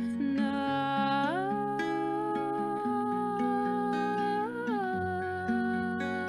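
A woman singing a long wordless note over acoustic guitar chords; the note slides up about a second in, holds, and drops back down near the end.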